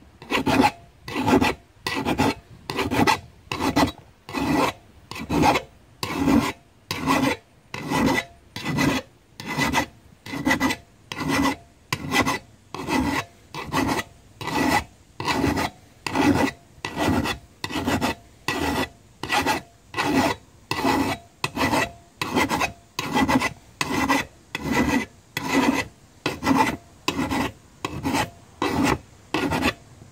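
Hand file rasping along the cutting edge of a steel John Deere Z345R mower blade, sharpening it in a steady series of strokes, a little over one a second, each cutting on the downstroke.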